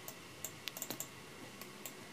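Faint, irregular light clicks from computer controls, a scattered run bunched about half a second to a second in, then a couple more near the end.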